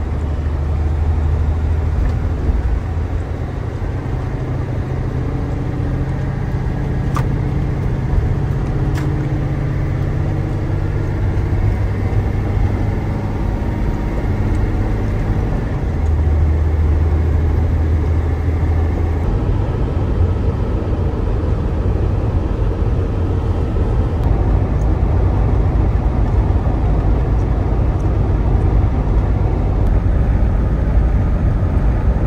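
Box truck's diesel engine and tyre noise heard from inside the cab at highway speed: a steady low drone. Two brief clicks come about seven and nine seconds in.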